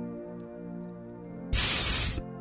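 Soft background music with held notes, then about one and a half seconds in a loud, brief hiss of gas rushing out of a soda bottle as it is opened.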